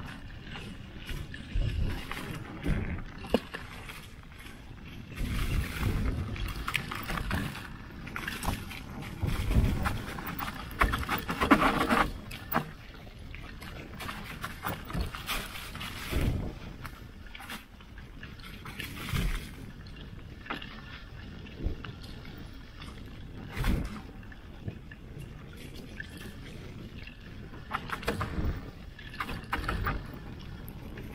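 Mountain bike riding fast down a dirt trail, heard from a bike-mounted action camera: tyres rolling over dirt and leaves with a steady rumble, and irregular knocks and rattles from the bike over bumps.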